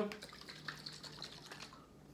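Faint small clicks and handling noise as the cap of a small glass hot sauce bottle is twisted open.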